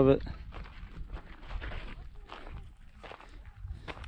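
Footsteps of a person walking on a dirt trail, about two steps a second.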